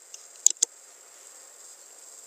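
Two quick clicks about half a second in, from computer input during a spreadsheet recording, over a faint steady high-pitched hiss.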